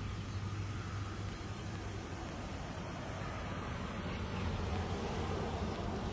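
Steady low outdoor drone of background noise, swelling slightly near the end as a car passes on the road beside the green.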